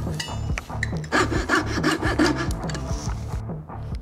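Coping saw cutting through walnut in repeated back-and-forth strokes, clearing the waste between hand-cut dovetail tails.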